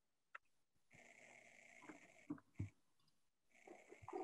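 Near silence: faint room tone with a soft click, a faint breath-like hiss and two soft knocks around the middle.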